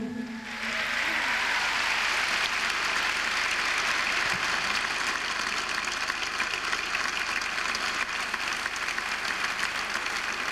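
Large theatre audience applauding: dense clapping that swells up within the first second and then holds steady.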